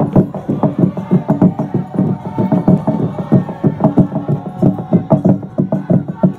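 A large Naga log drum, a hollowed tree trunk, beaten by many men at once with wooden beaters: a dense, fast run of wooden strikes, several a second, ringing on without a break.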